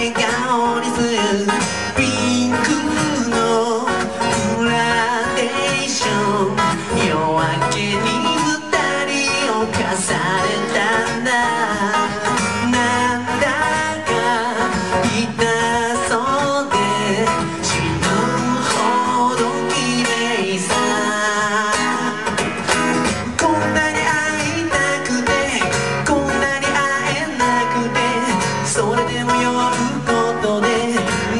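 Acoustic guitar played live: a continuous instrumental passage of quickly picked notes.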